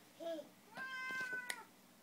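A baby's short babble, then a high held squeal lasting under a second, ending with a sharp slap of a hand on the lid of a metal tin.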